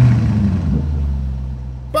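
Logo sound effect: a deep, steady low hum that fades away over about two seconds, the tail of a sudden low boom.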